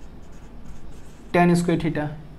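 Marker pen writing on a whiteboard: faint short strokes for about the first second and a half, then a man starts speaking near the end.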